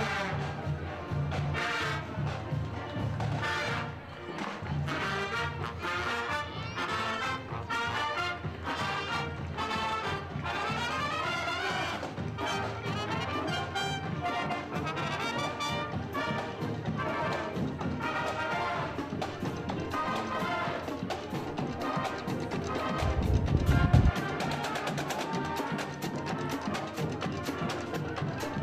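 High school marching band's brass section, mostly trumpets and trombones, playing a march while marching. A loud low thump lasting about a second comes near the end.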